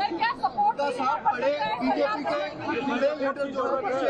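Several voices talking over one another, reporters' questions overlapping.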